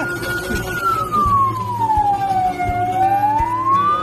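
Fire engine siren wailing: one long tone that holds high, then slides slowly down to a low point about three seconds in and climbs back up near the end.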